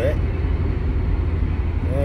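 Steady road and engine noise inside a moving car's cabin: a constant low rumble.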